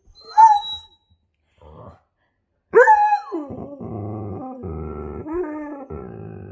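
Husky vocalizing: a short high whine about half a second in, then near the middle a loud call that falls in pitch and runs on as a long, wavering, grumbling howl.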